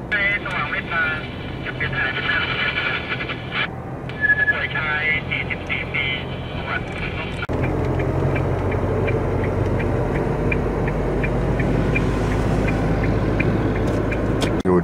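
Moving car's cabin road noise with voices over it for the first half. After an abrupt cut about halfway in, a steady low rumble of the car on the road, with a faint light ticking about three times a second.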